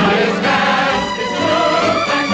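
Samba dance music from a 1940s Hollywood film soundtrack, full and steady with a repeating low beat.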